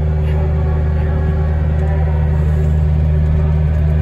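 Diesel engine of a brush-clearing machine running steadily, a constant low drone heard from its cab.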